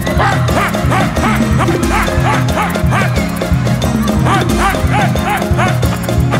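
Live band music with a steady beat and bass line. Over it, a short high note that rises and falls repeats about three times a second.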